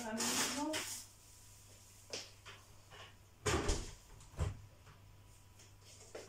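Kitchen knocks and thuds as a refrigerator door is shut: the loudest, a double thud about three and a half seconds in, with a lighter knock before it and another about a second after.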